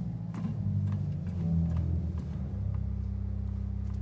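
16-foot Gemshorn pedal stop of an Aeolian-Skinner pipe organ, a rank of metal pipes, played from the pedalboard. A few bass notes step lower, then one low note is held from about two and a half seconds in. It is a string-like bass tone with edge and center to it, quick to speak but without much heaviness.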